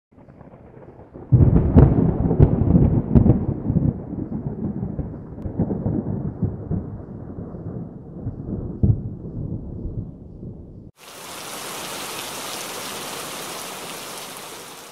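A sudden thunderclap just over a second in, with a few sharp cracks, rolling into a long rumble that fades over about nine seconds. Near the end it switches abruptly to a steady hiss like heavy rain.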